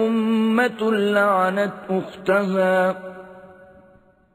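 Male qari reciting Quranic Arabic in melodic chant, long held notes with slow pitch bends in a few phrases. The last phrase ends about three seconds in and dies away slowly.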